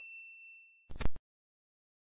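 A bright metallic ding whose ringing fades out within the first second, then a short, louder sharp hit about a second in.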